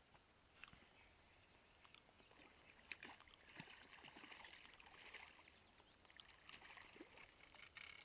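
Faint splashing of a hooked brown bullhead thrashing at the water's surface as it is reeled toward the bank, strongest a few seconds in.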